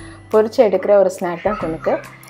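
A person speaking over soft background music.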